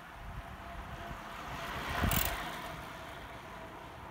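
Time-trial bicycle passing close by at speed: a rush of tyres and wheels swells to a peak about two seconds in and fades as the rider goes away.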